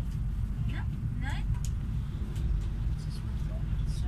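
Steady low rumble inside a moving vehicle, with people's voices talking over it.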